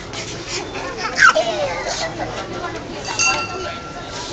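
Toddler's voice: a loud, high squeal that falls in pitch about a second in, among chatter and babble. Near the end a clear ringing tone starts and holds.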